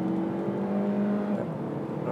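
Saab 9-3 2.0 Turbo's turbocharged four-cylinder engine pulling hard under full throttle, heard from inside the cabin, its pitch rising slowly. The note drops about one and a half seconds in.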